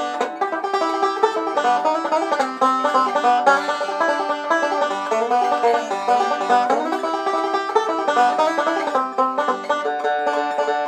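Epiphone MB-250 five-string resonator banjo being picked in a continuous run of fast notes.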